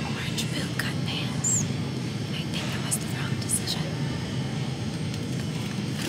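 A woman whispering to the camera over a steady low background hum.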